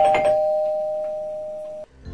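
A chime ringing two steady tones together and fading slowly, with a quick run of clicks as it starts. It cuts off suddenly near the end.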